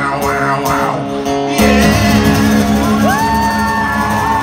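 Live acoustic guitars strummed with male singing, the song getting louder about a second and a half in. About three seconds in, a voice slides up into a long held high note.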